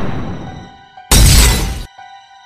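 Glass-shattering sound effect: one crash fading over the first second, then a second, louder smash about a second in that cuts off suddenly, with a few steady ringing tones underneath.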